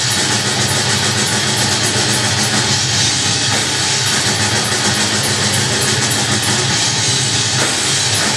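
A live rock band playing a song: drum kit, electric guitars and bass guitar, loud, dense and steady throughout.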